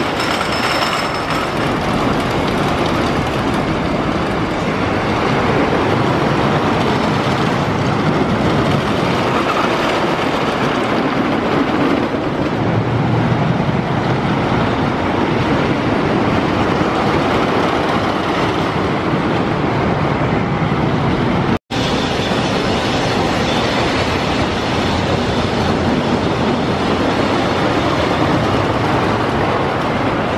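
Custom Coasters International wooden roller coaster train running along its track: a steady rumble, broken by a split-second cut-out about two-thirds of the way through.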